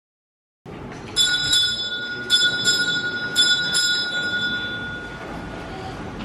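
A small bell struck in three quick pairs, its bright tone ringing on and slowly fading between strikes.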